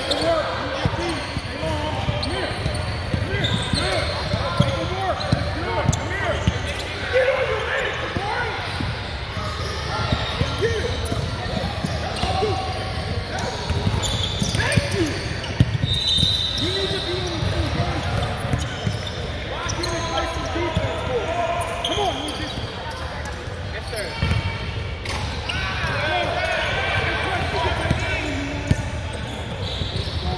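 Basketball bouncing on a hardwood gym floor, with indistinct voices of players and spectators echoing in a large hall. A brief high-pitched squeak comes about halfway through.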